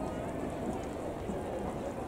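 Indistinct chatter of nearby spectators in a stadium over steady outdoor background noise.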